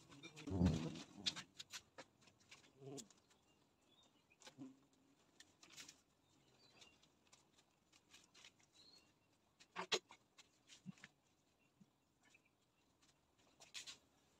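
Quiet handling sounds as a plastic-wrapped hive box is covered: a brief rustle of plastic and cloth near the start, then scattered light taps and knocks. A sharper knock comes about ten seconds in, as a wooden board is laid on top as a lid.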